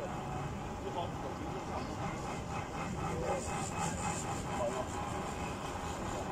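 Hong Kong Peak Tram funicular car running on its track, a steady rolling noise, with faint voices behind it.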